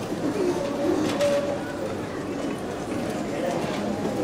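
Spectators chattering in the grandstand: a steady murmur of many voices with no clear words.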